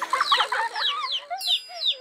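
Cartoon baby chicks cheeping: a quick run of short, high, falling peeps over lower wavering chatter, with a bright chime ringing out about one and a half seconds in.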